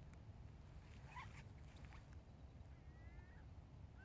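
Near silence: a faint low outdoor rumble, with a few faint brief high calls about a second in and again near the end.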